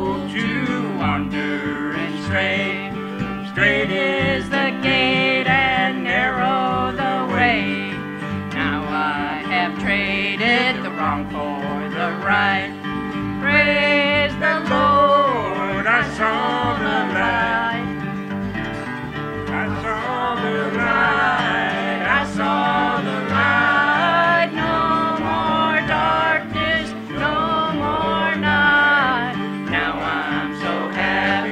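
Live acoustic bluegrass band playing: fiddles bowing the melody over strummed acoustic guitars and a plucked upright bass, with a steady rhythm.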